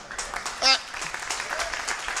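Congregation applauding, a dense even patter of many hands clapping, with a man's brief "uh" over it a little under a second in.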